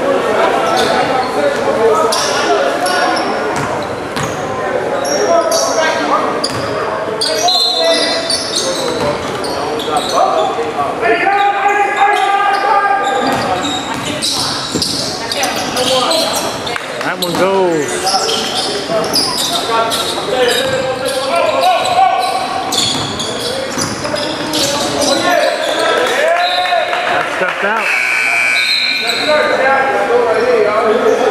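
Live basketball play in an echoing gymnasium: a basketball dribbling and bouncing on the hardwood floor with many short knocks, under steady shouting from players and onlookers.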